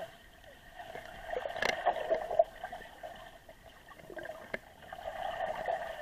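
Muffled water sound picked up by a camera under the water of a swimming pool: gurgling and sloshing that swells about a second in and again near the end, with a few sharp clicks.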